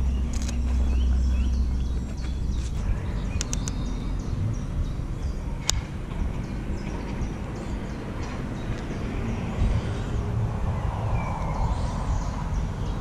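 Low rumble of wind and handling noise on the camera microphone, heaviest in the first two seconds, with small birds chirping throughout. A few sharp clicks sound as well, the loudest about six seconds in.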